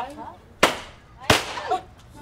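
Two confetti party poppers going off, two sharp pops about two-thirds of a second apart, with a voice between and after them.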